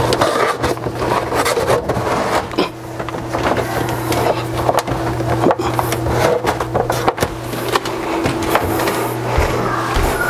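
A 12-volt light cable being pulled through a gap in a wooden bookshelf: repeated rustling and scraping with scattered clicks and knocks, over a steady low hum.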